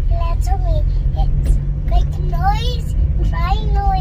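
Steady low rumble of a car driving, heard from inside the cabin, with a young child's high-pitched voice in short bursts of talk or laughter.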